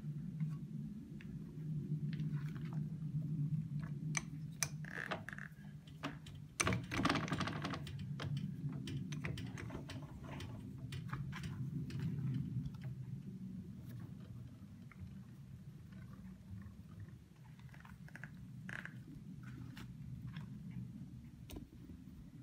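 Light metallic clicks and taps from lathe tooling and parts being handled, most frequent in the first half, over a steady low hum.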